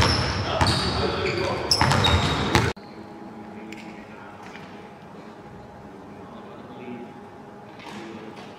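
Basketballs bouncing on a hardwood gym floor, echoing through a large sports hall. The bouncing cuts off abruptly a little under three seconds in, leaving a much quieter stretch of faint voices.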